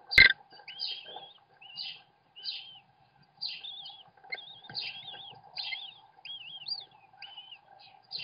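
American kestrel nestlings begging at feeding: a string of short, high, wavering chirps, one or two a second, over a faint steady hum. A sharp click comes right at the start.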